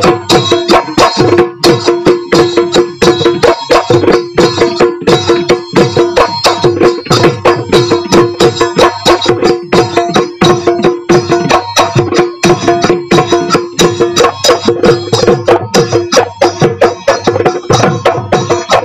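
Bihu folk music driven by dhol drumming: fast, continuous drum strokes with a steady held note sounding under them.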